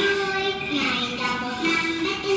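A Vietnamese children's Tet song playing back: a child's voice sings a melody of held notes over a light instrumental backing.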